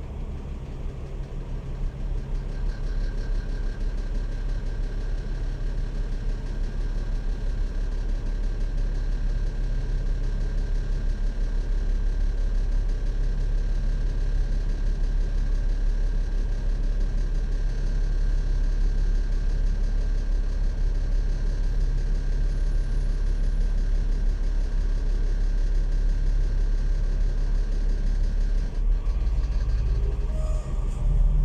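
Alexander Dennis Enviro500 MMC double-decker bus idling at a standstill, heard from inside the upper deck as a steady low engine hum. A faint steady high whine joins about two seconds in.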